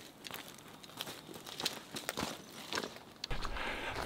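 Footsteps of a hiker in boots crunching on a gravel trail, about two steps a second. A low rumble joins in near the end.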